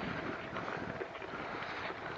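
Steady rushing wind noise on a Panasonic Lumix FT7's built-in microphone while riding a bicycle, with tyres rolling over a dirt track underneath.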